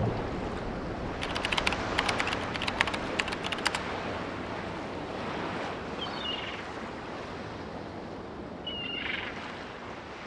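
Sea waves and surf with wind, a steady rushing wash. A quick run of sharp clicks sounds about one to four seconds in, and two short high calls come near six and nine seconds.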